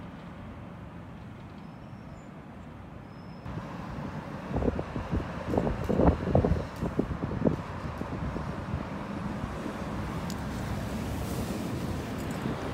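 Steady low hum of distant road traffic. About halfway through comes a run of irregular low thumps.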